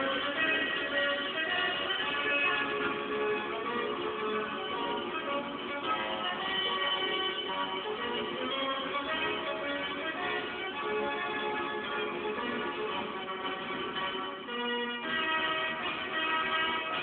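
Organ music played from a record on an old Philips tube-amplified record player and radio, many-voiced and continuous, its sound cut off above the high treble.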